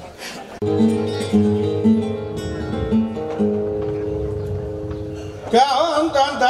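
Flamenco guitar starts suddenly about half a second in, playing strummed chords with ringing held notes. Near the end a male flamenco singer comes in with a long, wavering sung note.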